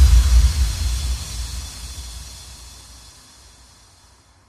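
The final hit of an electro house track ringing out: a deep bass boom under a bright, hissing, cymbal-like wash, fading away over about four seconds.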